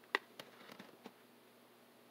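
A metal spoon clicking and tapping faintly against a bowl of chili: one sharp tap, then several softer clicks within about the first second.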